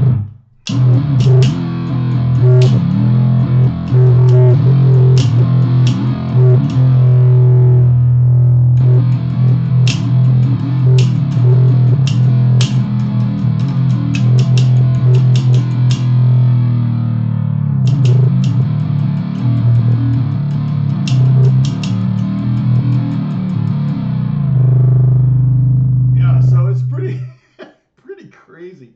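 Handmade one-string fretless bass struck with a drumstick and played through a fuzz pedal: a heavy, distorted low note with sharp stick hits and sliding pitch bends. The playing stops about a second before the end.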